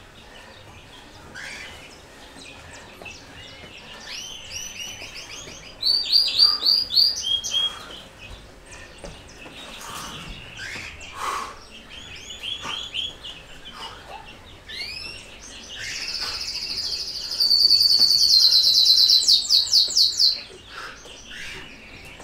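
Small songbirds chirping in short repeated series, then a loud, fast trilling song from about sixteen to twenty seconds in.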